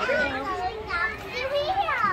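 Children's voices at a busy playground: chatter and calls, with one high call sliding down in pitch near the end.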